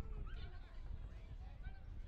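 Distant shouts and calls from rugby league players across the field, short and scattered, over a low steady rumble.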